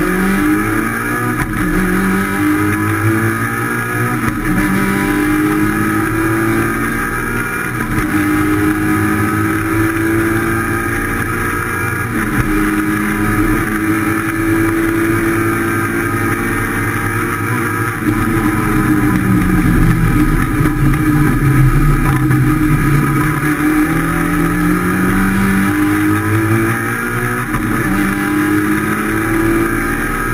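Rally car engine heard from inside the cockpit, accelerating hard off the start through several upshifts, its pitch climbing and then falling back at each gear change. The revs hold high through the middle, drop about two-thirds of the way in as the car slows, and climb again near the end.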